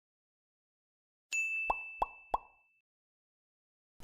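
Logo intro sound effect: a high steady tone that starts about a second in and lasts about a second and a half, with three quick plops over it about a third of a second apart.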